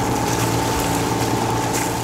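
Sailing yacht under engine: a steady inboard engine drone with water noise along the hull.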